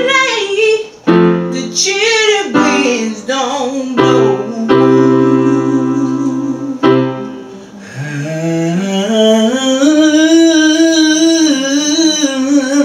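Gospel singing over piano chords: a singer runs through wordless melismatic ad-libs between held chords, then from about eight seconds in slides up into one long held note with vibrato.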